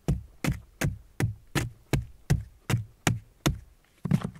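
Hand digging into the hard, gravelly earth wall of a pit: a rapid, even run of about ten blows, two to three a second, each a dull knock.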